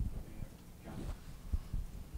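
Soft, irregular low thumps over quiet room tone, with a faint off-microphone voice about a second in.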